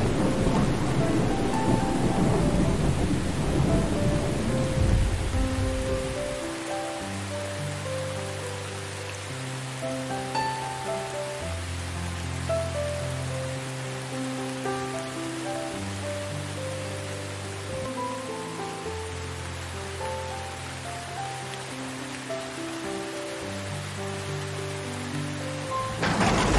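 Steady rain with a long roll of thunder that fades away over the first six seconds or so. Then slow, soft instrumental music with held bass notes and a higher melody plays over the rain.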